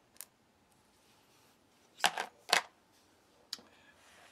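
Quiet handling noises from ration items and a utensil on a plastic compartment tray: a faint click near the start, two short clatters about two seconds in, half a second apart, and a sharp click near the end.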